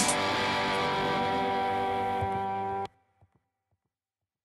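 Final chord of a rock song: a distorted electric guitar chord rings out steadily after a last cymbal hit, then cuts off suddenly about three seconds in.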